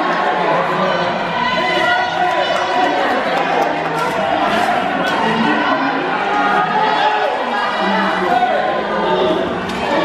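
Many people chattering at once, overlapping voices with no single speaker standing out, inside a large hall.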